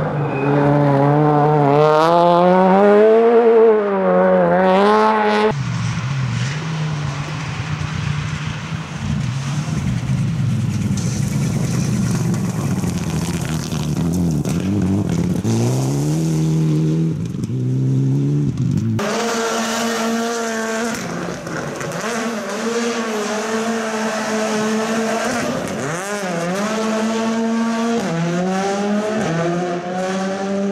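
Rally car engines at full throttle, revving up and dropping back through quick gear changes as the cars drive past. The sound changes at two edits, about five seconds in and past the middle, each time to another car accelerating and shifting up.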